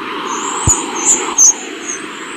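Logo-animation sound effect: a steady hiss with a run of short, high chirps over it and one sharp low thud about a third of the way in.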